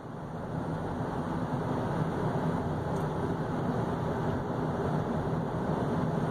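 A steady low rumbling noise with a faint hum in it, swelling over the first second or so and then holding level.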